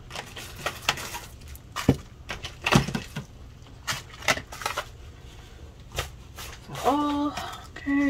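Small bubble-wrapped packets crinkling and rustling as they are handled and laid on a table, with scattered sharp clicks and taps.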